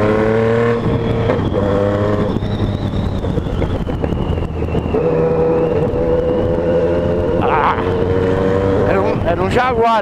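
Yamaha MT-09 three-cylinder engine pulling the bike along city streets. Its note rises slightly in the first second, eases off for a couple of seconds, then holds steady at cruising revs. Wind rushes over the helmet microphone throughout.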